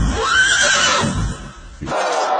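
A horse whinnying once, a single call that rises and falls over about a second, over a low rumble.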